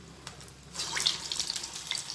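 Medu vada batter dropped into hot oil for deep-frying, sizzling and crackling sharply from just under a second in, then easing off.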